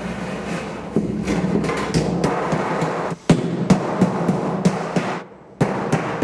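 Background music, and from about three seconds in a run of sharp metal knocks, about three a second: a sheet metal hammer beating over the tail of a Pittsburgh seam on galvanized steel duct.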